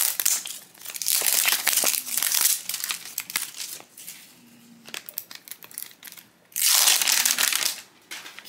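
Crinkly printed plastic wrapper being peeled off a plastic toy capsule, crackling in several bursts, loudest near the end as the last of it comes off.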